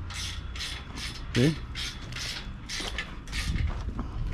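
Ratchet wrench clicking in quick, even strokes, about three a second, tightening the nuts on the carriage bolts of a chain link fence brace band.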